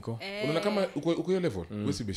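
Speech: people talking in a conversation, no other sound standing out.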